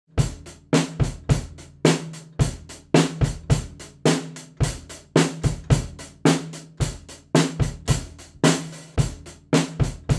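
Acoustic drum kit played in a steady beat, about two strong hits a second, with bass drum, snare and cymbals, recorded through a single 1930s STC4021 moving-coil omnidirectional microphone placed above the kit as an overhead.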